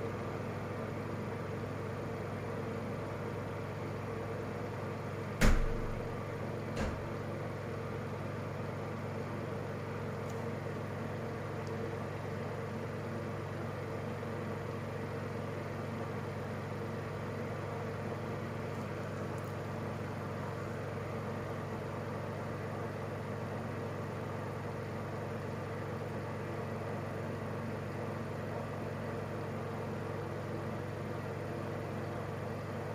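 A steady low hum, with a sharp knock about five and a half seconds in and a lighter one about a second later.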